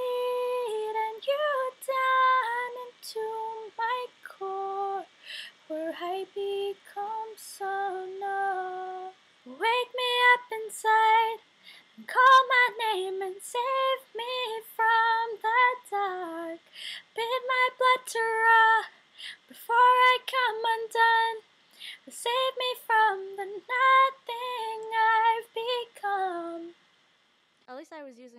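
A young woman singing unaccompanied in short phrases with brief pauses between them. Her voice is very breathy, a sign that it was not yet properly developed.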